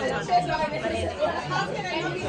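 Speech and chatter: voices talking over a background of other people's conversation.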